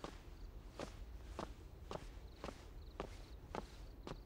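Footsteps of a person walking at a steady pace, about two steps a second, each step a short sharp tap.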